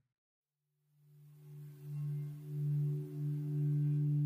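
After about a second of silence, a low, steady musical drone fades in and swells in a few slow waves, then holds on as an underscore.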